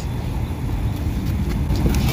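A low outdoor rumble with no speech over it.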